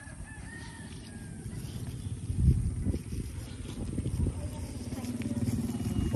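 A rooster crowing faintly in the distance during the first second or so, over a low, uneven rumbling noise that swells briefly about halfway through.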